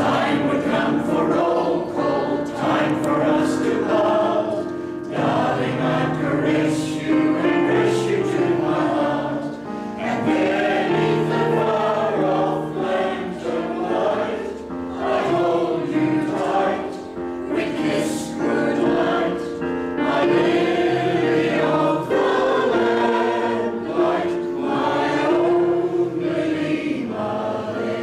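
A mixed choir of men's and women's voices singing together in continuous phrases.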